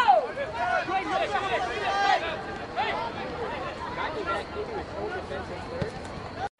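Several voices shouting and calling out over one another during a soccer match, with one shout falling in pitch right at the start.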